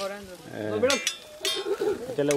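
People talking, with a couple of short sharp clicks in between.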